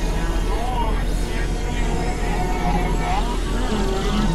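Layered experimental synthesizer noise music, several recordings mixed together: a steady deep drone under a dense wash of noise, with tones that bend up and down.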